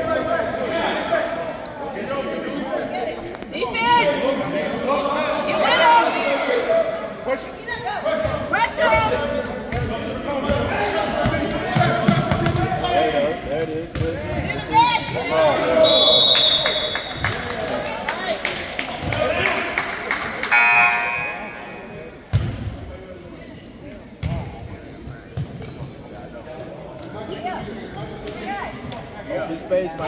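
Basketball bouncing on a hardwood gym floor, with short high squeaks of sneakers, under shouting and voices echoing in the gym.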